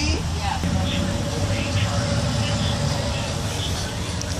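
School bus engine and road noise heard from inside the cabin: a steady low rumble with a faint steady tone above it for most of the time.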